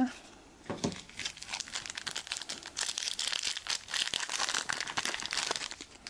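Foil Yu-Gi-Oh booster-pack wrapper crinkling as it is torn open: a dense run of small crackles starting about a second in and stopping near the end.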